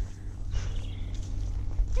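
A pony's hooves on a soft grass track, a few dull footfalls, over a steady low rumble of wind on the helmet-mounted camera.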